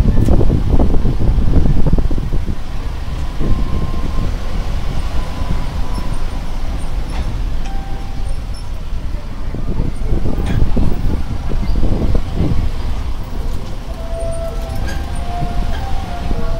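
Running and road noise of an open-sided tourist tram bus driving along, heard from on board as a steady low rumble.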